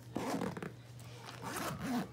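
Zipper on a backpack diaper bag's front pocket being pulled shut, in two rasping strokes about a second apart.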